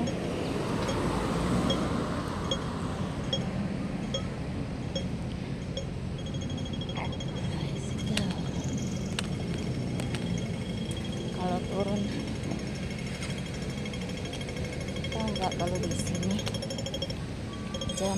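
Pedestrian crossing audible signal ticking slowly, about one tick every 0.7 s while the crossing is on red. About six seconds in it switches to a fast, continuous ticking, the signal that the green man is showing and it is safe to cross. Street traffic noise runs underneath.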